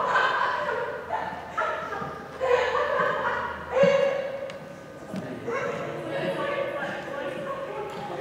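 A group of high, young voices calling out and chattering at a distance, echoing in a large gym, with a few louder shouts in the first half.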